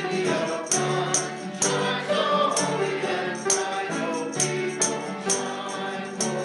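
Congregation singing a hymn together to ukulele and piano accompaniment, with a jingling percussion beat of about two strokes a second.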